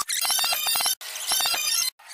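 An edited-in electronic sound effect with bright, clinking high tones, played twice in a row, each time about a second long and cut off abruptly.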